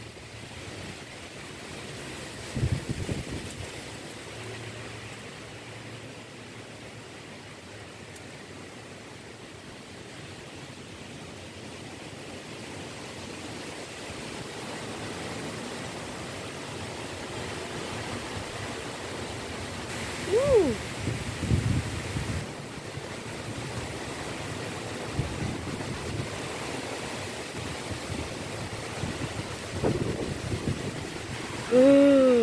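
Strong wind rushing through leafy trees, a steady hiss that slowly swells. Gusts buffet the microphone with low rumbles about two to three seconds in and again around twenty to twenty-two seconds.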